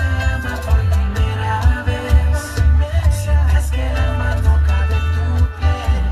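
Bachata song with singing over a heavy, steady bass line, played loud for the dancers.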